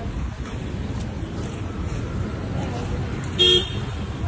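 Street traffic rumbling steadily, with one short, loud vehicle horn beep near the end.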